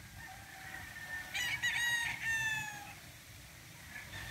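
A gamecock crowing once: a long call that starts faint, swells about a second and a half in, and trails off falling in pitch near the three-second mark.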